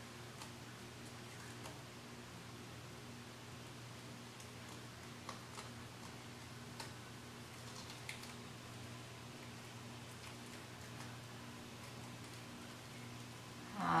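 A dried peel-off face mask being slowly peeled from the skin, giving a few faint, scattered ticks and crackles over a steady low hum.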